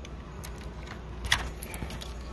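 A few light plastic clicks and rattles as dashboard wiring-harness connectors are handled and unplugged, the sharpest about a second and a half in, over a low steady hum from the running car.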